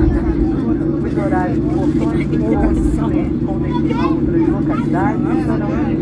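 Steady low drone inside the passenger cabin of a Boeing 737 taxiing with its engines at idle, with voices talking over it.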